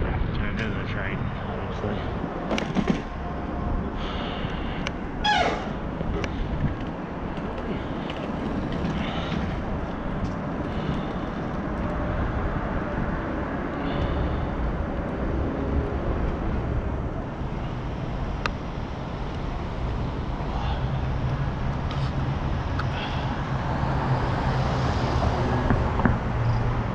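Wind and road noise on an action camera's microphone while riding a bicycle through city traffic: a steady low rumble with a few brief, sharp higher sounds over it.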